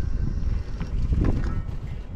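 Wind noise on the microphone: a low, uneven rumble that rises and falls in gusts.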